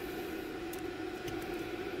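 Steady machine hum from the fiber laser marking machine, with a few faint light clicks from handling the parts of its laser-head mount.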